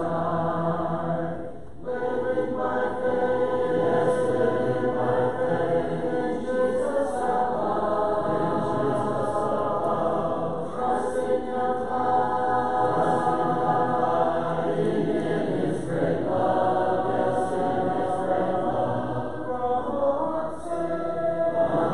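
A church congregation singing a hymn together a cappella, many voices with no instruments, in long held phrases with short breaks between the lines.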